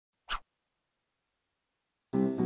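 A single short scratchy swish sound effect, lasting about a fifth of a second, a moment after the start.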